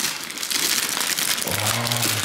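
Clear plastic wrapping crinkling and rustling as packed model-aircraft parts are handled. A short hummed voice comes in near the end.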